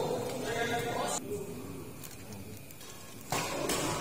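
Voices echoing in a sports hall: a drawn-out call or shout in the first second, then a lull, with noise picking up suddenly about three seconds in as play resumes.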